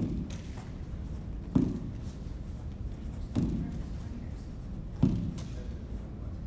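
Lacrosse wall ball: a lacrosse ball thrown hard against a cinder-block wall and caught in the stick, giving four sharp thuds about every second and a half, each echoing in a large hall, with fainter knocks between.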